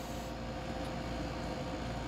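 Steady room noise: an even hiss with a faint steady hum, no speech.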